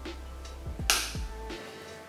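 Background music with a beat of kick drums, and a loud, sharp hit about a second in that dies away quickly.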